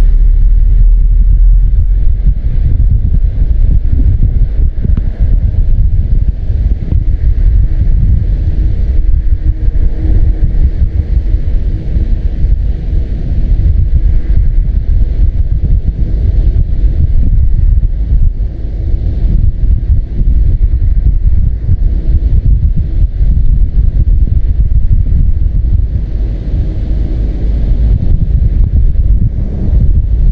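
Wind buffeting the microphone of a camera carried on a moving vehicle: a loud, steady low rumble with the vehicle's running noise underneath.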